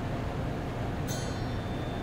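Steady low room hum, with a brief high-pitched ringing tone starting about a second in.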